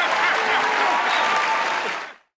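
Studio audience applauding, with some laughter mixed in.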